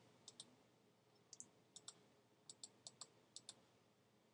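Faint computer mouse clicks, about a dozen short ticks, some in quick pairs, scattered over a near-silent room.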